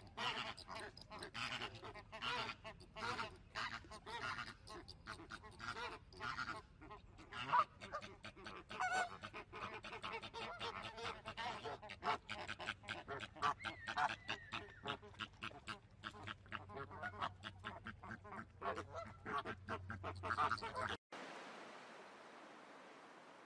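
A flock of flamingos and mallard ducks calling: a dense, unbroken run of short honks and quacks, several birds at once. The calling cuts off suddenly about a second before the end, leaving only faint hiss.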